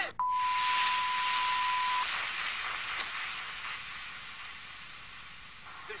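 Hiss with a steady high beep at the start that stops after about two seconds. There is a single click about three seconds in, and the hiss slowly fades.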